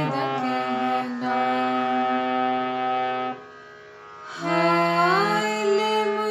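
Eastern-brand reed harmonium playing a slow melody of held notes over a steady low drone; the sound drops away for about a second past the middle, then the notes resume.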